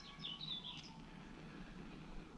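Faint bird chirps: a few short, high calls in the first second, then only a quiet outdoor background.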